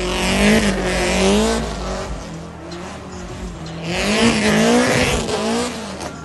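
Car engine revving hard with its revs rising and falling, and tyres squealing as the car slides sideways. This comes in two bursts about two seconds apart, the first over the first two seconds and the second over the last two, with the engine quieter between them.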